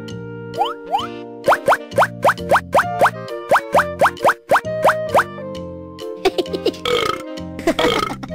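Children's cartoon background music with a fast run of short rising 'bloop' sound effects, about four a second, from about half a second in until about five seconds. Another flurry of them and a brief, rougher noise follow near the end.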